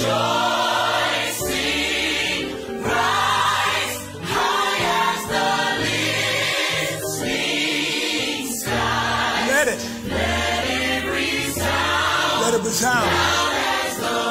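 Gospel choir singing in full harmony, with a steady low bass line beneath the voices.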